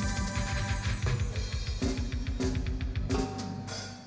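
Live band playing amplified dance music with a drum kit, bass and cymbals, with a steady beat. About three seconds in the bass beat stops and the music dies away: the song is ending.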